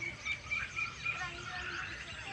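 Birds calling outdoors: a run of short, high, even-pitched chirps, about four a second, over softer, lower bird notes.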